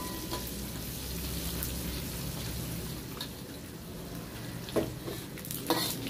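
Dried anchovies sizzling as they fry in hot oil in a wok, being fried until golden and crisp. A metal spatula stirs them, knocking against the wok shortly after the start and twice near the end.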